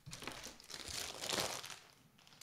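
Faint, irregular plastic crinkling as CGC-graded comic book slabs in clear plastic sleeves are slid off a stack and picked up.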